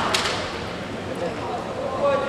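Two sharp cracks of bamboo kendo shinai striking right at the start, then the hall's steady background murmur.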